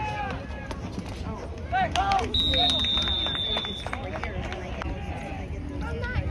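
A whistle blown once in a single steady blast of about a second and a half near the middle, the sign that the play is over. Voices call out on the field around it.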